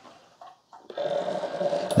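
Keurig K-Iced coffee brewer starting up about a second in and running with a steady buzzing hum as it begins a 12-ounce fresh-water rinse in descale mode.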